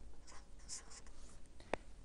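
Faint scratching of a felt-tip marker writing on a white sheet, in short strokes, with a single sharp click near the end.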